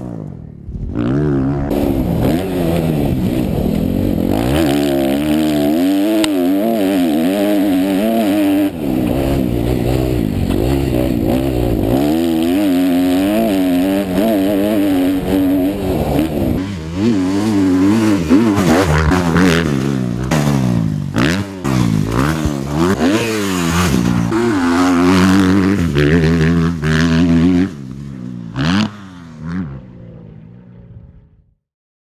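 Kawasaki motocross bike's engine revving hard around a dirt track, its pitch rising and falling again and again as the rider accelerates, shifts and backs off, with scattered clattering. The engine fades away near the end.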